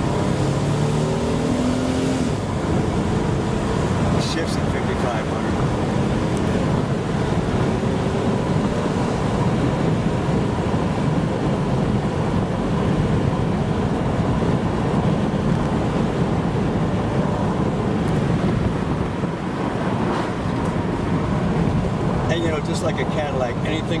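Inside a 1991 Buick Reatta cruising at a steady road speed: an even rush of tyre, road and wind noise with the engine underneath, holding at one level throughout.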